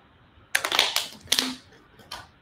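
Crinkling of a thin plastic water bottle being handled while drunk from, in two short crackly bursts about half a second and a second and a half in.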